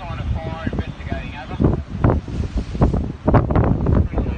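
Wind buffeting the microphone in gusts over the sound of surf, with indistinct voices in the first second or so.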